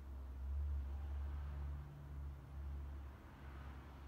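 Quiet room tone under a low rumble that swells and dips a few times, with a faint hum in the middle and light hiss.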